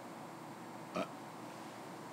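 Quiet room tone at a committee-room microphone, broken once, about a second in, by a short breath or sniff.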